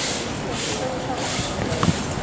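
Faint voices of people talking in the background, with a soft hiss that swells and fades about twice a second.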